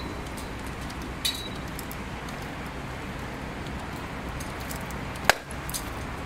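Hydraulic pull-out test rig on a bonded rebar anchor under load: steady low background rumble with one sharp, loud metallic crack about five seconds in, and a faint click near the start.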